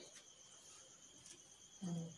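A pause with a faint, steady high-pitched trill running throughout, and a short murmur of a voice near the end.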